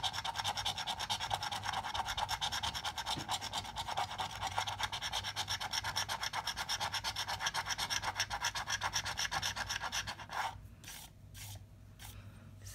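A coin scratching the coating off a scratch-off lottery ticket in quick, even back-and-forth strokes, about six a second. The strokes stop about ten and a half seconds in, followed by a few single scrapes.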